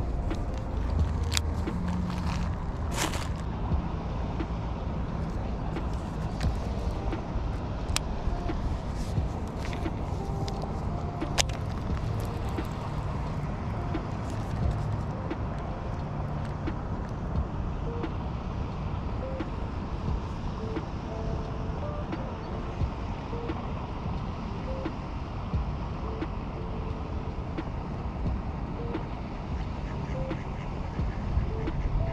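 A few sharp clicks in the first three seconds and a couple more later, from handling a baitcasting reel, over a steady low outdoor rumble.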